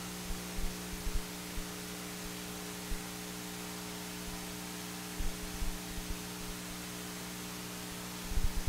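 Steady electrical mains hum, a buzz of several even tones over a faint hiss, with scattered low thuds about half a second to a second and a half in, near three seconds, and again around five to six seconds.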